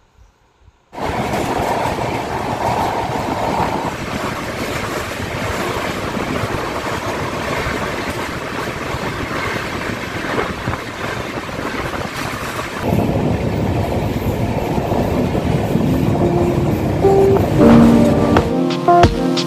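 Poorva Express passenger train running at speed, heard at an open door: steady noise of the wheels on the rails, getting louder and deeper about thirteen seconds in. Music comes in faintly near the end.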